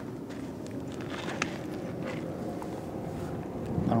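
Steady outdoor background of distant traffic rumble with light wind on the microphone.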